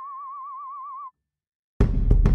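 Music: a single high held tone with a steady, even vibrato that cuts off about a second in; after a short silence, a band comes in loudly near the end with hard drum hits and heavy bass.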